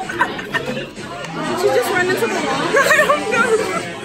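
Several people talking over one another in indistinct chatter, growing louder from about a second in.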